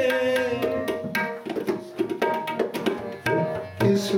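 Kirtan accompaniment: tabla drumming a steady pattern of sharp strokes under sustained harmonium notes.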